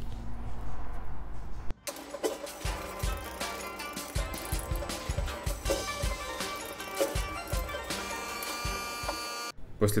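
Background music with a steady beat comes in suddenly about two seconds in and cuts off abruptly just before the end. Before it there is a low steady hum.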